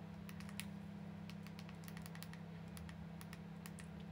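Faint typing: quick, light, unevenly spaced clicks, several a second, over a steady low hum.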